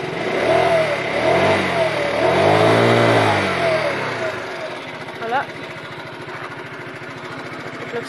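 IMF scooter's four-stroke engine revved twice on the throttle while standing, its pitch rising and falling back each time, the second rev louder and longer, then settling back to a steady idle.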